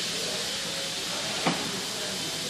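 Steady background hiss, with one faint click about one and a half seconds in.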